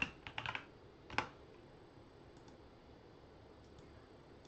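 Computer keyboard keys being tapped: a quick run of keystrokes in the first half second, then one sharper keystroke about a second in.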